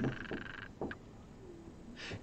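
A short pause in a man's talk: faint room noise with a single soft click a little under a second in.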